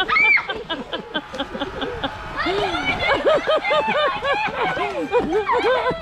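Girls laughing hard in quick repeated bursts, several voices overlapping, the laughter growing busier about halfway through.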